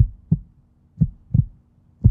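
Heartbeat sound effect: pairs of short low thumps about a third of a second apart, the pairs repeating about once a second, over a faint steady hum.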